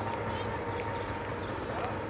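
Outdoor street background: a steady hum with faint voices and a few light, irregular clicks.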